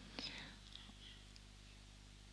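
Near silence: room tone with a low steady hum, and a faint breath shortly after the start.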